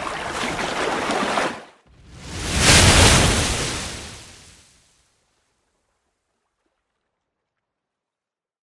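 Intro sound effects: a splashing, rushing water sound for about a second and a half, then a louder whoosh with a deep rumble that swells and fades out about five seconds in.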